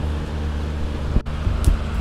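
Coffee beans roasting in a cast iron skillet at the second crack: a few small, sharp cracks like popcorn popping, a sign the roast is moving toward dark. Under them runs a steady low rumble from the gas stove and its exhaust fan.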